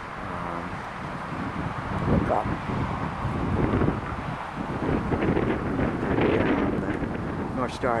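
Wind buffeting the microphone, with road traffic running underneath; the traffic swells about five seconds in.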